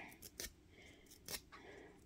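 Faint paper crinkles and a couple of soft ticks as a foil-covered die-cut cardstock bow piece is worked over a finger to curl it.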